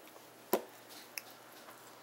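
A couple of light clicks and small taps in a quiet room, the sharpest about half a second in: a baby's hands picking at and patting crumbly food on a plastic high-chair tray.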